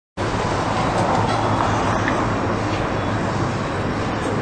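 Steady city street noise, mostly road traffic, with no single sound standing out.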